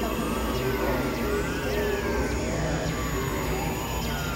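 Experimental electronic noise-drone music: a dense, steady low rumble under held tones that step between pitches, with thin tones gliding up and down in a zig-zag above.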